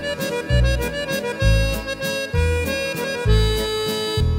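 French-style waltz played on a Yamaha Tyros 4 arranger keyboard, with an accordion voice carrying the melody. A bass note lands about every 0.9 s, once per bar, under sustained chords.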